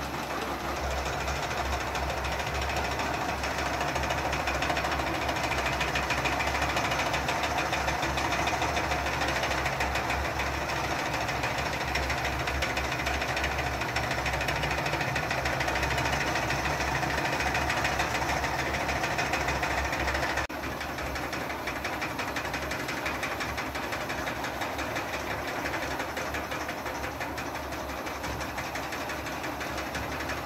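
Small electric wool-spinning machines running, a steady motor whir with a fast, even rattle. The sound drops a little about two-thirds of the way through.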